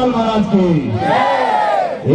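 A loud voice calling out in long, drawn-out phrases that rise and fall in pitch, over crowd noise. A long high call swells up and falls away in the second half.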